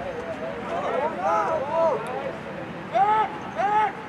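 Voices shouting across a lacrosse field during play: several overlapping calls, then two loud, drawn-out shouts about three seconds in.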